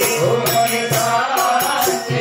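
A woman singing a Gujarati devotional song (bhajan) into a microphone, over hand percussion keeping a steady beat of about four strokes a second, with a low drum.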